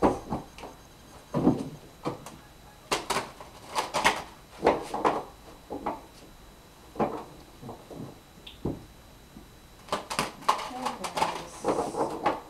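A deck of tarot cards being shuffled by hand: short, irregular bursts of cards rustling and tapping against each other.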